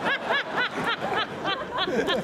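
A person laughing in a quick run of short, high-pitched ha's, about four or five a second.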